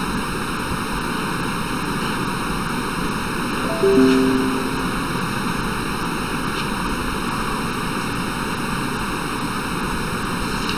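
A short three-note chime stepping down in pitch, from the Google Meet video-call app, about four seconds in, signalling that a waiting participant has been admitted to the call. A steady hiss runs underneath.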